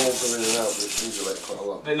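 Hand saw cutting the edge of a polystyrene-backed plasterboard sheet: the last couple of rasping strokes, about two a second, dying away after about a second, with a man's voice over them.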